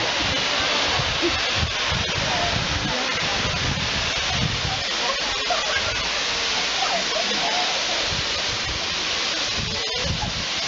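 A steady, loud rushing hiss, with the voices of people on the platform, and irregular low buffeting on the microphone.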